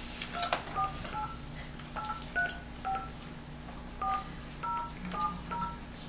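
A touch-tone telephone being dialed: about ten short keypad tones, each a paired beep, pressed at an uneven pace.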